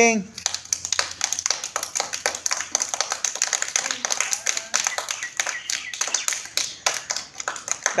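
Several children clapping their hands, quick uneven claps several times a second.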